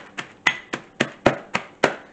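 A meat mallet pounding walnuts in a zip-top plastic bag on a tile floor, crushing them. About eight sharp, even strikes, roughly four a second.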